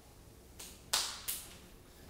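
Three short, sharp noises in quick succession, the second one the loudest.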